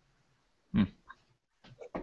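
A single short vocal noise from a man, about a second in, then a few faint small sounds near the end.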